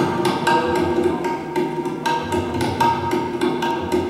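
Tabla played in a fast run of strokes. The tuned treble drum rings at a steady pitch and deep bass-drum strokes come in and out.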